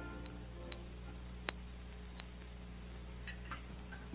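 A handful of sharp, light clicks at irregular intervals, the loudest about one and a half seconds in, over the steady low hum of an old broadcast recording.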